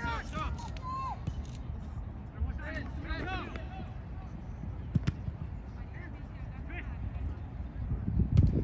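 Distant shouts and calls from soccer players on the pitch, coming in short bursts near the start and again about three seconds in, with a single sharp thud about five seconds in.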